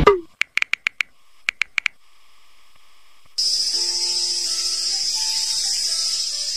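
Mobile phone alarm beeping: two quick runs of short electronic beeps, five then three, in the first two seconds. From about halfway, a steady high insect chorus begins, with a few faint soft tones under it.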